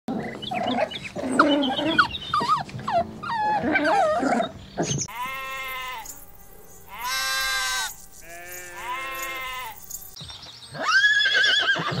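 Several puppies whine and yelp over one another for about five seconds. Then sheep give three long bleats, and a horse's whinny begins near the end.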